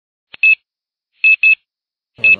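Short, high electronic beeps over silence: one beep about half a second in, then two in quick succession about a second later.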